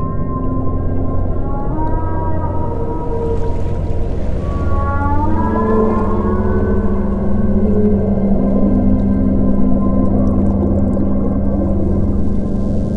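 Whale song: drawn-out calls that glide upward in pitch, about two seconds in and again around five seconds in, over a steady low ambient music drone.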